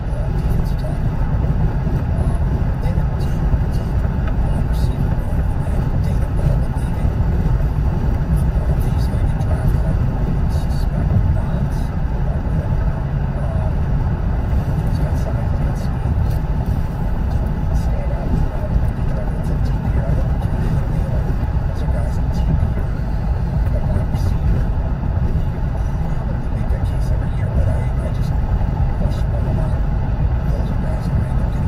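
Steady road and engine noise heard inside a car's cabin while driving at highway speed, deep and even throughout.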